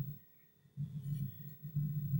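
Low, muffled humming of a man's voice with his mouth closed, in two stretches: briefly at the start, then again from just under a second in.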